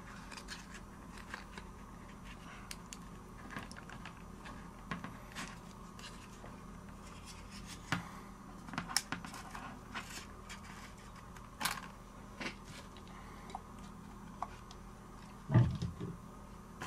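Plastic prying card scraping and clicking along the edge of a Samsung Galaxy phone's glass back cover as it is worked loose from its adhesive, in scattered small clicks and scrapes. A dull knock on the bench near the end is the loudest sound.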